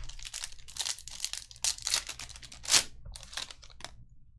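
Foil trading-card pack wrapper being torn open and crinkled by hand, a rapid run of crackles and rustles with the sharpest crinkle about three-quarters of the way through.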